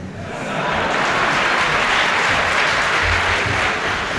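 A crowd applauding, swelling over the first second and then holding steady.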